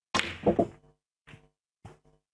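Snooker cue tip striking the cue ball with a sharp crack, followed about a third of a second later by the clack of the cue ball hitting the black, which is potted. A few fainter, short knocks follow, about one every half second.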